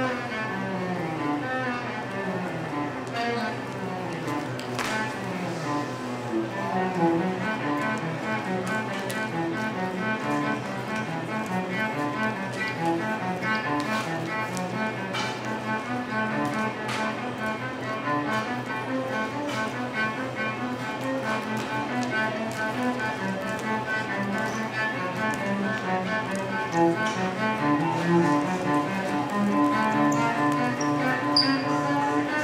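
Cello played live, bowed notes moving through a melody, with runs of falling notes in the first several seconds.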